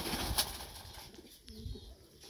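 Domestic pigeon cooing faintly and low, about a second and a half in, after a brief rustling noise at the start.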